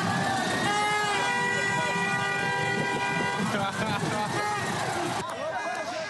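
A horn (dudka) blown by a trained bear, sounding one long steady note for about three seconds, with people's voices rising and falling before and after it.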